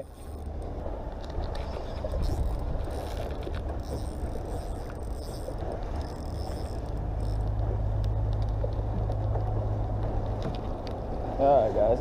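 Steady low rumble of wind and water around a small open boat. From about seven seconds in, a deeper steady hum rises for a few seconds and then drops away: the bow-mounted electric trolling motor running, worked from its hand remote.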